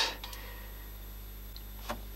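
Quiet workshop room tone with a steady low hum, broken by one light click near the end.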